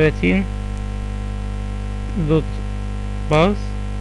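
Steady electrical mains hum with a buzzy stack of overtones, picked up in the recording chain, with a few short spoken words on top.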